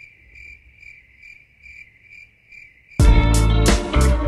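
Faint, high cricket chirping, pulsing about two and a half times a second. About three seconds in, loud guitar music cuts in over it.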